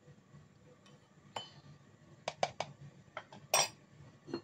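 A drinking glass and kitchenware being handled: scattered light clinks and taps, about seven in all, with a quick run of three a little past two seconds in and the loudest near the end.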